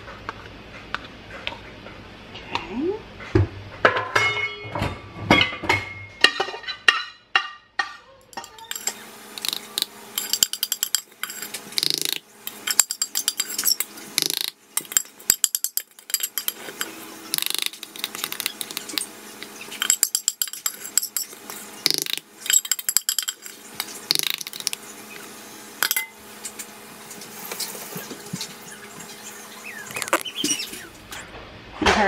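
A spoon clinking and scraping against the stainless steel inner pot of an Instant Pot, scraping out thick fruit butter into a funnel. A quick run of ringing metal taps comes about four seconds in, followed by irregular scraping and clicks.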